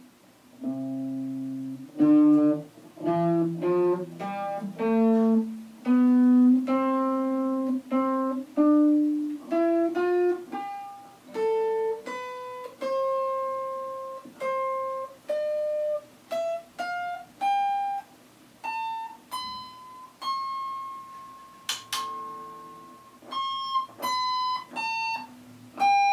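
Coxx electric guitar played as a slow single-note melody, each plucked note ringing and dying away, the line climbing from low notes into the upper register. It is played on old, rusted strings put on in 2008, the sound before a string change.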